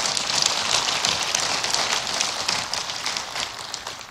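Congregation applauding, a dense even patter of many hands that fades near the end.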